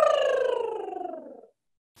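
A woman's voiced lip trill, her lips fluttering as she sings a single note that slides downward in pitch. It fades gradually and stops about one and a half seconds in.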